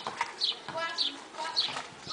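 A bird calling over and over, a short high note falling slightly in pitch, repeated evenly about twice a second.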